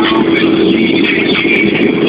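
Mazda 323 1.5 16V inline-four engine and tyres heard from inside the cabin at a steady cruising speed: an even, unchanging drone.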